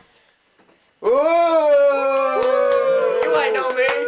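Several voices break into long, drawn-out cries together about a second in, overlapping and held, as a mock talk-show audience greets a guest; sharp hand claps start joining in near the end.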